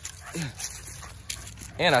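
A young pit bull gives one short vocal sound, falling in pitch, about half a second in, while chasing a flirt pole.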